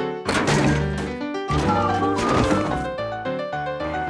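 Comedy film soundtrack: orchestral-style music with a few sharp knocks and thuds, the loudest right at the start.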